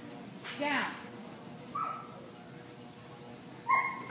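Dog giving three short, high-pitched yips or whines, the last one the loudest.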